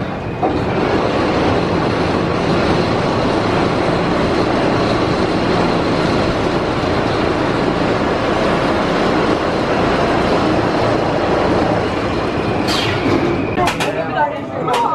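Maurer SkyLoop steel roller coaster train running along its track, a loud steady rush of wheels on steel that starts suddenly about half a second in. A few sharp clicks come near the end.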